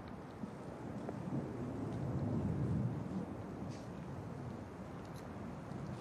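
Steady outdoor background noise, a low rumble with a light hiss and no distinct events.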